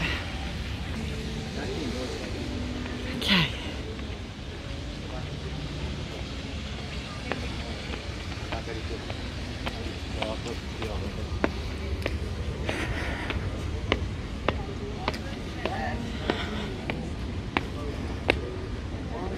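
Busy outdoor plaza ambience: a steady low rumble under scattered voices of people nearby, with light footstep clicks on stone paving about once or twice a second from partway through.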